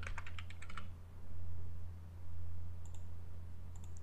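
Computer keyboard typing: a quick run of keystrokes in the first second, then a few faint clicks near the end, over a steady low hum.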